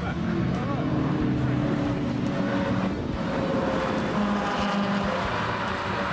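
Several Volvo cars running on a race circuit, a steady mix of engine notes that swells about four seconds in as a car comes closer.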